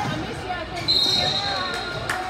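A long, steady, high whistle blast starts about a second in and holds for about a second, over spectators' voices and shouts in a basketball gym.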